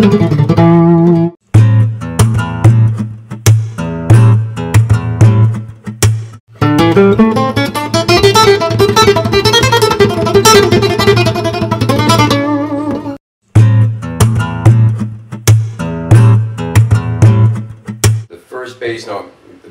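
Steel-string acoustic guitar played fingerstyle: a repeating groove of open A bass notes under chords and melody, with sharp percussive hits on the strings and body standing in for a drum beat. The playing stops dead briefly three times.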